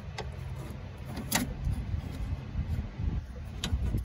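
A few sharp clicks and knocks of plastic and metal door hardware as the interior door handle assembly of a 1995–98 Chevy pickup door is worked loose and pulled out. The loudest click comes about a second and a half in, over a low steady rumble.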